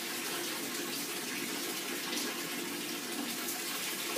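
Bath tap running steadily, water filling a tub with an even hiss.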